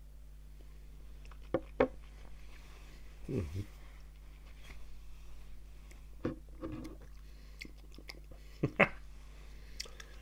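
Quiet mouth sounds of a man tasting cask-strength whisky: sipping, working it round the mouth and swallowing, with a short low hum about three and a half seconds in. A few light clicks of glassware on the table.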